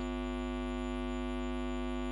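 Steady electrical mains hum, a constant buzzy tone with many evenly spaced overtones, unchanging throughout.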